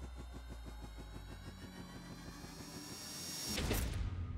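Edited intro sound effect: a fast, even, engine-like pulsing of about eight beats a second over a low hum, with a tone that slowly rises and builds to a loud whoosh near the end.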